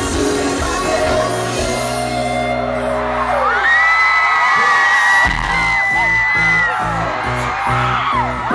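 Live K-pop concert music heard from among the audience: band and vocals over sustained chords, then the bass drops out about halfway through and high, gliding fan screams rise over the music before a pulsing beat comes back.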